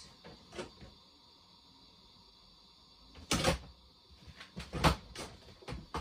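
Plastic storage crates and boxes being handled as items are put back: a quiet stretch, then a sharp knock about three seconds in and a run of clicks and knocks, the loudest a little before the five-second mark.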